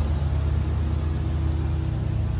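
Steady, loud low engine drone from construction work, an even machine hum with no break, and a faint high whine above it.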